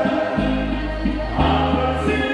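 Oberkrainer folk band playing live: male voices sing in harmony over a bouncing bass-and-chord polka accompaniment.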